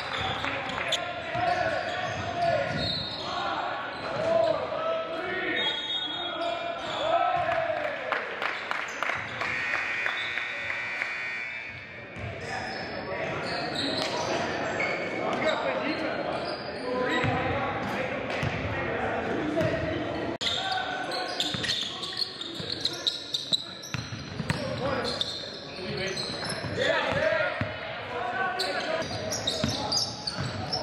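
A basketball dribbling on a hardwood gym floor amid indistinct players' voices and calls, echoing in a large gymnasium.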